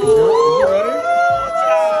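Several people letting out a long, loud, drawn-out 'woo' together: overlapping voices rise in pitch over the first second, then hold.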